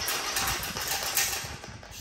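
DeWalt 60V FlexVolt brushless string trimmer running, its line head whirring at speed, then winding down and fading over the last half second as the trigger is let off.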